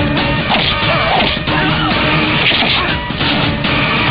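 Loud film background music with crashing and hitting sound effects laid over it.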